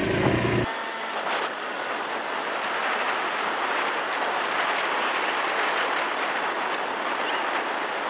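Steady rushing air and road noise from riding along a street, with no clear engine note. A low hum cuts off suddenly under a second in.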